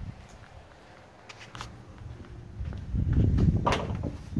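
Footsteps and light clicks as someone moves up to the open door of a military truck's shelter box; the handling noise grows louder in the last second or so, with a sharp knock near the end.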